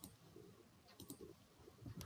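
Faint computer mouse clicks: a quick pair of clicks about a second in, with near silence around them.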